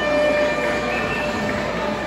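Concert wind band of brass and woodwinds playing held, sustained chords in a slow passage.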